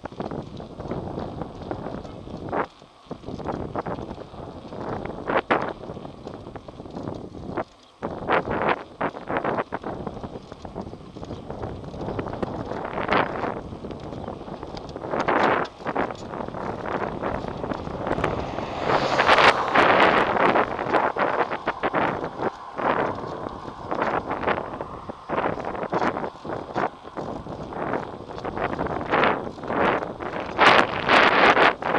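Wind buffeting the microphone of a camera on a moving bicycle: a rushing noise that swells and drops in gusts, loudest a little past the middle.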